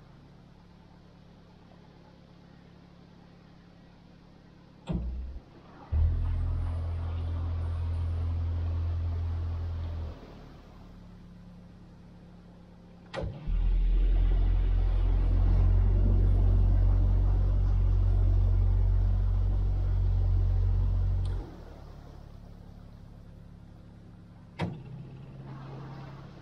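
Narrowboat diesel engine ticking over, twice opened up into a loud, steady low rumble as it drives the boat forward, once for about four seconds and then for about eight. Each burst begins abruptly, just after a sharp click or clunk, and drops back to idle suddenly. There is another clunk near the end.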